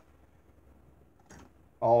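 Near silence: room tone, with one faint short sound about a second and a half in, then a man's voice starting near the end.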